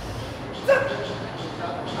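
A man's short strained vocal sounds as he forces a leg-extension rep near failure: one brief effortful noise about two-thirds of a second in, then fainter ones near the end.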